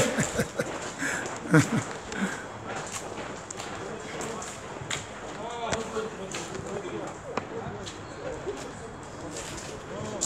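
Faint voices talking in the background over outdoor ambience, with a few scattered clicks and scuffs.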